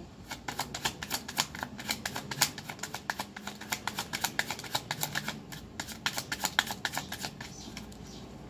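A deck of tarot cards shuffled by hand: a fast, irregular run of crisp card clicks that stops shortly before the end.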